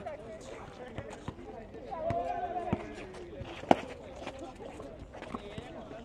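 Pickup basketball on an outdoor concrete court: a few sharp thuds of the ball, the loudest a little past halfway, under distant voices of players calling out.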